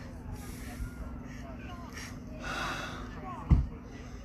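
Faint voices of people talking at a distance outdoors over a steady low hum, with one short, loud low thump about three and a half seconds in.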